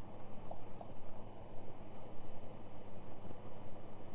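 Honda Gold Wing's flat-six engine and the wind of the ride, heard while cruising at steady speed: a continuous low drone with wind noise over it.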